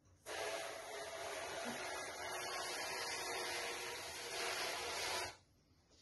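Kitchen tap running into the sink in a steady stream for about five seconds, turned on and off abruptly.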